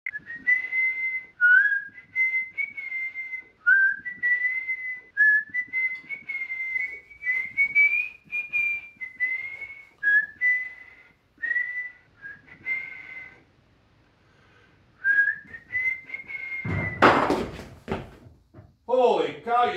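A man whistling a tune to himself, a single high wavering melody in short phrases with brief pauses. Near the end a sudden loud burst of noise cuts across it.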